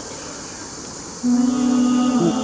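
Male voices start singing about a second in, together holding one long low note.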